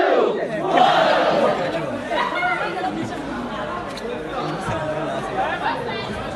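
Many people talking over one another: a chattering crowd of spectators, with one voice louder right at the start.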